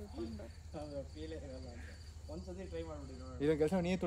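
Crickets chirping in a steady, fast, even pulse, under people's voices.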